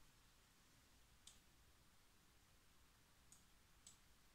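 Near silence with three faint, sharp computer mouse clicks: one about a second in and two close together near the end.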